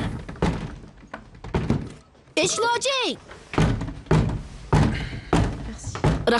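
A voice cries out briefly, then a series of heavy thuds follows through the second half, each short and sharp.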